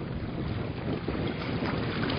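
Steady rush of fast-flowing harbor water streaming past a boat's hull, a tsunami surge current of perhaps five or six knots, mixed with wind noise on the microphone.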